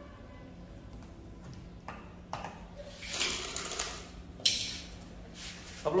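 Petrol being poured from a plastic jerrycan into the fuel tank of a Senci 6 kVA inverter generator: a rushing, splashing pour for about two seconds in the middle, with a couple of light knocks of the can around it.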